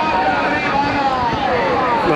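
A man's voice drawn out in one long call that slowly falls in pitch, over the background noise of a large outdoor crowd.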